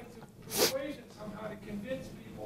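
Quiet speech in a room, as heard by a distant microphone, broken about half a second in by one short, loud burst of breath noise from a person, like a sneeze.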